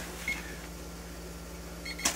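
One short, faint electronic beep from a biometric gun vault's fingerprint reader about a quarter-second in, over steady room hum; faint clicks near the end.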